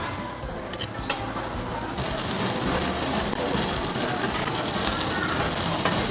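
Thin slices of beef sizzling on the wire mesh of a tabletop charcoal yakiniku grill, a steady crackling hiss, with a sharp click about a second in.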